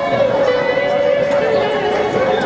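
Busy festival soundscape: many voices talking at once, mixed with music playing with long held notes.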